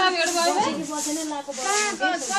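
Several people's voices talking and calling over one another, with a steady hiss on the recording.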